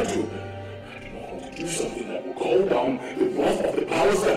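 Film soundtrack: background music under a man's raised, angry voice.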